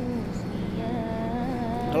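A single voice chanting or singing in long held notes that waver slowly up and down, with a talking voice cutting in at the very end.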